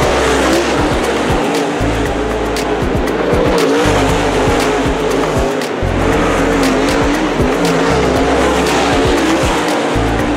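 Dirt super late model race cars running hard around a clay oval, their V8 engines blending into a loud, steady drone whose pitch wavers as the cars go through the turns.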